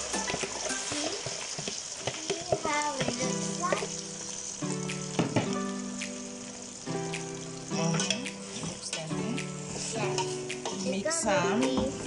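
Sliced okra sizzling in warm palm oil in a metal pot, stirred with a wooden spoon that clicks and scrapes against the pot. Background music with held notes plays underneath.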